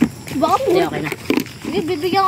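Boys' voices talking and calling out in short bursts, with brief pauses between.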